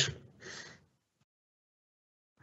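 The last of a spoken word fades out, then a short soft breath about half a second in, followed by dead silence.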